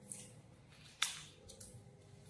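Faint rustling of sheets of paper being folded and creased by hand, with one sharp click about a second in.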